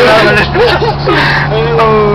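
Car engine running with a steady low drone, heard from inside the cabin while driving, under people's voices talking and calling out.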